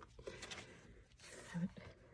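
Faint paper rustling as a page of a spiral-bound coloring book is turned by hand.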